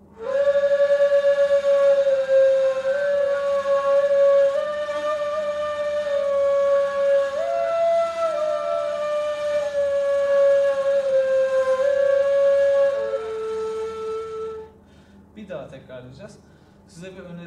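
Two neys, Turkish end-blown reed flutes, playing a slow phrase together in unison. Long held notes step gently up and down, with a briefly higher note about halfway through and a lower note held near the end, before the playing stops.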